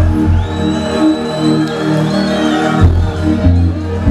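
Loud amplified music at a live concert, with crowd noise underneath. The deep bass eases off about a second in and comes back in force near the end.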